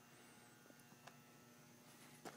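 Near silence: room tone with a faint steady hum and a single faint tick about a second in.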